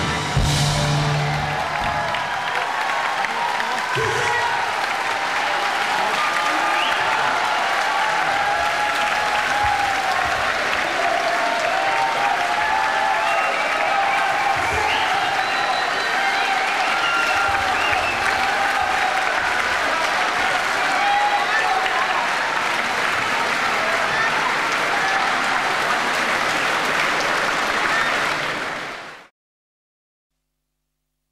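A concert audience applauding, with crowd voices mixed in. The last notes of the band die away about a second in, and the applause fades out shortly before the end.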